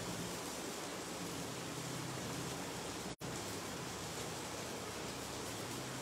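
Steady, even background hiss with a faint low hum, broken by a brief dropout about three seconds in.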